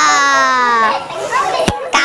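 A high-pitched, childlike voice holds one long note that slowly falls in pitch, followed by a short broken vocal sound and a single sharp click near the end.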